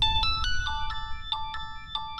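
A mobile phone ringing with a melodic ringtone: a quick tune of short, bright notes, about three a second.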